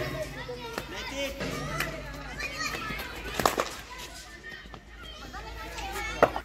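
Background chatter of voices with one sharp crack of a cricket bat striking a ball a little past halfway.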